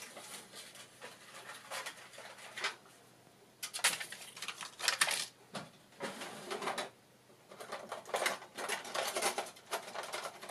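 Rustling and clattering of craft supplies being handled as a plastic sheet of self-adhesive pearls is fetched and laid on the table, in short bursts with the loudest about four to five seconds in.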